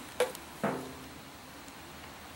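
Hands handling a plastic soda bottle and its cap: one sharp click shortly after the start, then a brief fainter sound, and then only quiet room tone.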